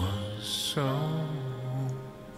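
A man singing a slow song in long held notes over soft backing music, with a short break and a new sung phrase starting about three-quarters of a second in.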